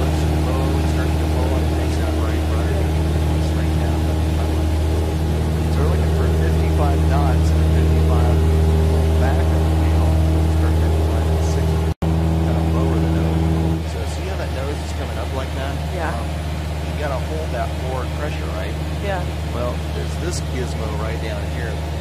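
Piston engine and propeller of a light training aircraft running at full throttle, a loud steady drone heard from inside the cockpit. It breaks off for an instant about twelve seconds in, and a couple of seconds later drops to a lower, quieter drone.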